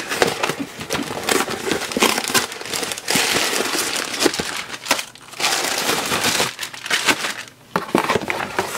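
Paper packing and a cardboard box crumpling and rustling as they are handled, with many small crackles; a white paper bag is pulled out of the box. The rustling is loudest from about three to five seconds in.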